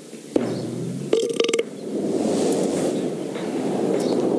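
A long, loud belch after chugging a can of beer. It starts suddenly about a third of a second in, has a brief pitched stretch about a second in, and carries on as a rough, gravelly rumble.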